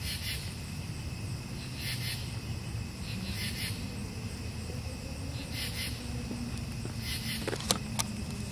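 Night insects calling: short trains of high chirps repeating about every second and a half, over a steady low rumble, with a single sharp click near the end.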